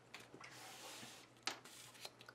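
Faint handling of a paper planner on a desk: pages rustling and the book sliding, with a few light clicks and a sharper tap about a second and a half in.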